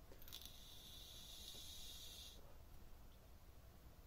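Faint hiss of a long draw on a Joyetech RunAbout pod vape, air pulled through the pod while its 1.2 ohm coil fires, lasting about two seconds and stopping abruptly.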